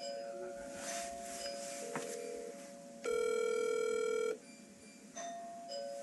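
An electronic phone ringing tone plays in a repeating pattern. Two soft held notes sound first; about three seconds in, a louder and brighter chord lasts just over a second. Then the soft notes start again.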